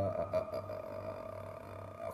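A man's short throat grunt as he pauses to think mid-sentence, then a steady low hum under the silence.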